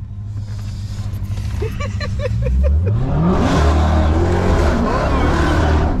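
Dodge Charger SRT Hellcat's supercharged V8 revving up in a rising sweep about two seconds in as the car launches. Then comes a loud, dense rush of spinning tires doing a burnout, running over the engine for the last three seconds.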